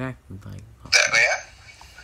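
Short vocal sounds without clear words: a deep, low voice right at the start, then a louder, higher-pitched vocal sound about a second in.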